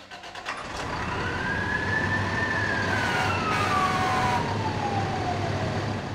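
A fire-engine siren wailing up in pitch for about two seconds, then winding slowly down through the rest of the clip, over a steady low rumble.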